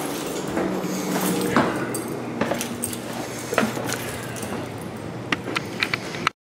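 Scattered light clicks and knocks, several in quick succession near the end, over a steady low hum.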